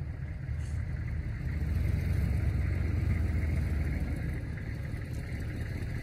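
Low rumble of wind buffeting the microphone outdoors, swelling a little in the middle and easing again.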